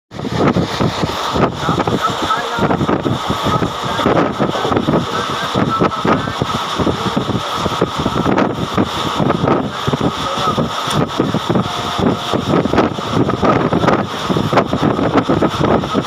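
Wind buffeting the microphone over the steady rush of an Indian Railways express train running at high speed, about 110 km/h, heard from an open coach door.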